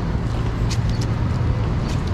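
City street traffic noise: a motor vehicle engine running steadily nearby as a low hum, with a couple of light clicks.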